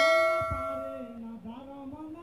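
Brass thali (metal plate) ringing out just after being struck, a bright bell-like tone that fades away over about a second. A lower wavering tone runs on beneath it.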